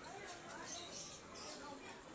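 Faint, indistinct background voices, with a few short high hissy sounds over them.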